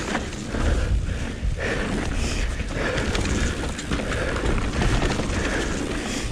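Mountain bike rolling over a dirt forest trail: steady tyre and bike rattle noise with a low rumble and scattered small knocks.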